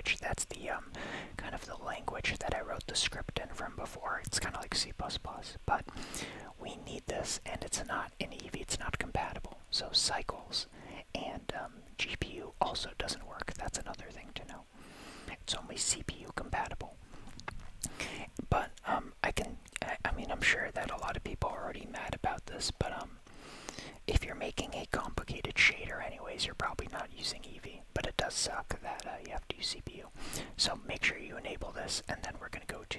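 A man whispering close to the microphone in continuous, unvoiced speech, with many small clicks between the words.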